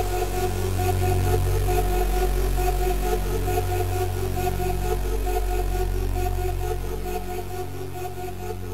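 Trance music: sustained synthesizer chords held over a deep bass drone, with a faint steady tick pattern on top, beginning to fade out near the end.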